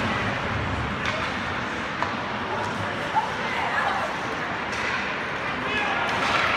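Ice hockey rink ambience: indistinct chatter of spectators in the stands over the hiss of skates on the ice, with a few sharp knocks of sticks and puck, the loudest a little after three seconds in.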